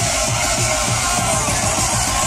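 Dirty dubstep played loud over a club sound system from a live DJ set: a dense electronic track with a steady, evenly repeating bass beat.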